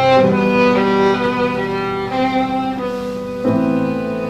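Violin and grand piano playing a slow passage: the violin holds long bowed notes over sustained piano chords, with a new low piano chord struck about three and a half seconds in.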